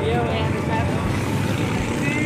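Boat engine running steadily under way, a continuous low rumble, with a voice calling out briefly near the start.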